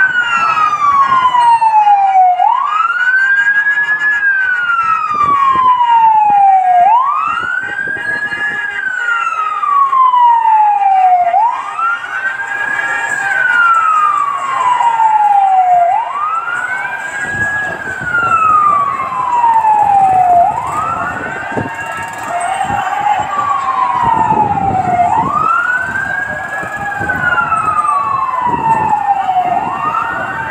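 Fire truck siren wailing: each cycle climbs quickly, then falls slowly over about four seconds, repeating steadily. A second, fainter siren overlaps it past the middle.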